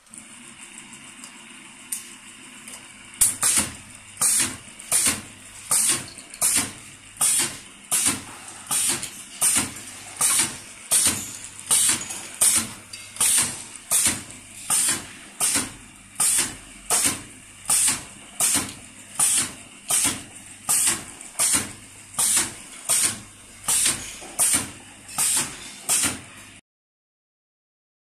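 Semi-automatic desktop screw capper for trigger spray pump caps running: a steady motor hum, joined about three seconds in by a sharp hiss that repeats evenly a little over once a second as the machine cycles.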